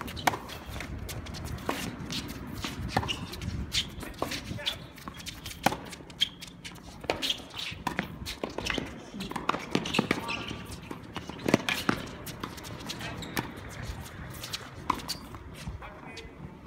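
Tennis balls struck by rackets in a quick doubles exchange: a run of sharp pops at uneven intervals, with shuffling footsteps on the hard court between shots.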